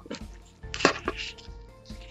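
Kitchen knife cutting into the plastic pouch of a reusable hand warmer filled with crystallised gel, with one sharp crack a little under a second in, over faint background music.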